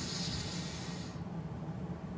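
A man's long, deep breath drawn in during pranayama breath work, a breathy hiss that stops about a second in.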